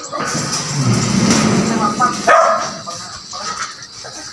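A sheet-metal door being pushed open with a scraping rattle. About two seconds in comes a short, loud pitched call.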